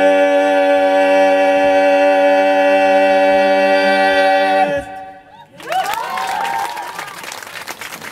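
A four-voice male a cappella group holds the final chord of a song, which cuts off almost five seconds in. After a short pause the audience breaks into applause.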